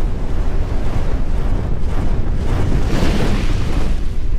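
Produced intro sound effects: a loud, deep, rushing rumble with a whoosh that swells about three seconds in.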